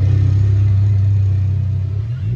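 Electric bass guitar holding one low, sustained note, the final note of the song.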